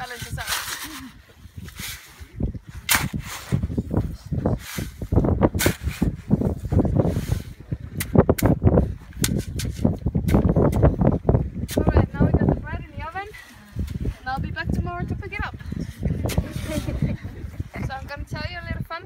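A metal shovel scraping and striking into wet, gravelly ground in a run of short, sharp strokes. Indistinct voices and laughter come in over the last third.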